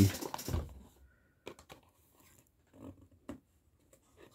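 Cardboard boxes being handled and set down on a playmat: a few scattered light taps and scuffs.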